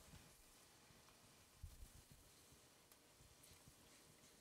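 Near silence: room tone, with a couple of faint soft thumps near the middle.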